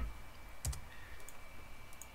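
A few sharp clicks from a computer mouse and keyboard as a spreadsheet formula is entered and a cell is selected. The loudest click comes a little under a second in.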